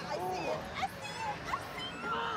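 Short, high-pitched yelps and squeals from people's voices, in brief bending cries amid crowd noise.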